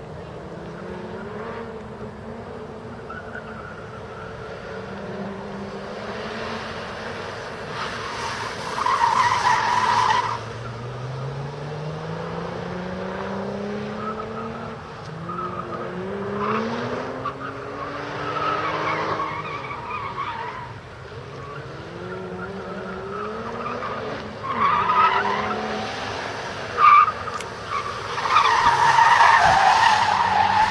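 Sports car's engine revving up and falling away repeatedly as it is driven hard around an autocross cone course, with tyres squealing loudly when cornering: about nine seconds in, again briefly around twenty-five seconds, and longest near the end. A single sharp knock comes shortly before the last squeal.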